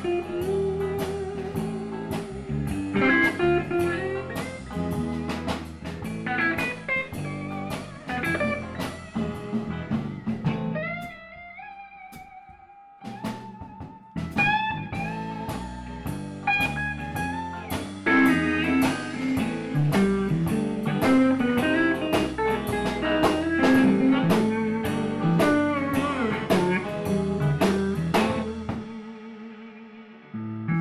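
Live blues band playing an instrumental break: electric guitar soloing with bent, gliding notes over a steady drum-kit beat. About ten seconds in the drums and low end drop out, leaving the guitar almost alone for a few seconds before the full band comes back in.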